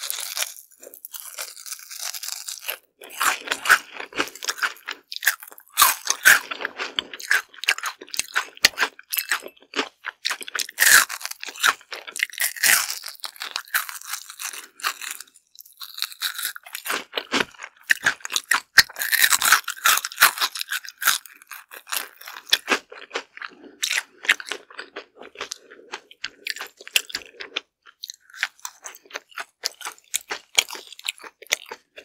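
Close-miked crunching and chewing of battered, deep-fried perilla tempura: a dense run of crisp crackles from bites, with chewing in between.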